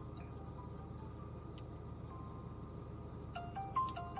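Outgoing phone call ringing through the phone's speaker as a chiming melody of short stepped notes, faint at first and clearer in the last second.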